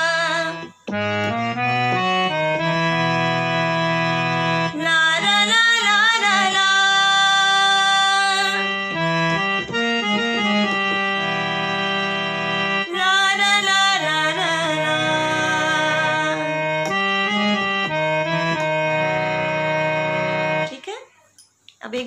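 Harmonium playing the song's 'la ra la' interlude melody over sustained reed chords and a steady bass note. Two wavering stretches in the melody come about 5 and 13 seconds in. It stops suddenly about a second before the end.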